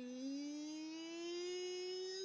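A voice holding one long drawn-out note, slowly rising in pitch.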